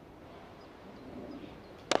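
Faint open-air background, then near the end a single sharp crack of a cricket bat striking the ball.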